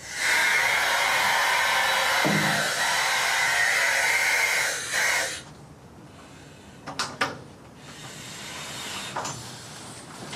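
A loud, steady hiss that starts suddenly and lasts about five seconds, then two sharp clicks in quick succession about seven seconds in.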